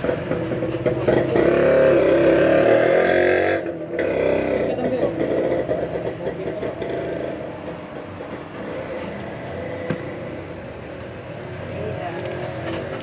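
Electric hair clippers buzzing steadily, with a voice over them in the first few seconds.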